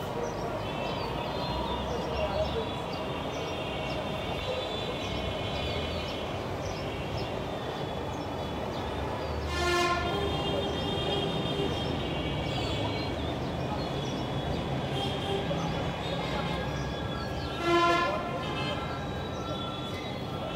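Steady outdoor background noise of a built-up area, with a horn sounding briefly twice, once about halfway through and again near the end.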